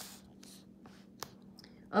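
Soft rustling and handling noise of the book's paper pages, with one sharp click a little past halfway.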